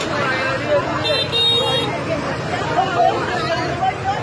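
Crowd of people talking over one another in the street. A motorbike horn toots once, high-pitched and under a second long, about a second in.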